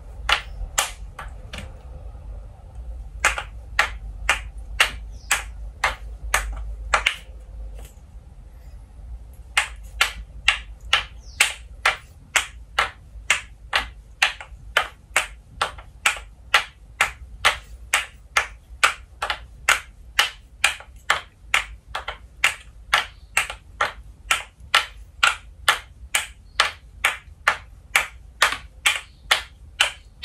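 Wooden kendama ball clacking on the wooden cups as it is tossed and caught: two short runs of clacks in the first seven seconds, then after a short break an even run of about two clacks a second.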